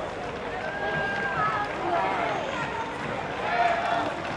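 Several people's voices talking and calling out at once over a steady background hubbub, none of it clear as single speech.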